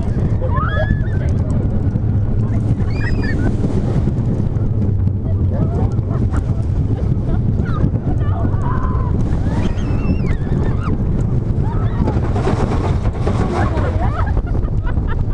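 The Big One's coaster train running at speed over its steel track, with a steady, loud rumble of the wheels and wind buffeting the microphone. Riders' whoops and screams rise and fall several times, about a second in, near three seconds, around ten seconds and near the end.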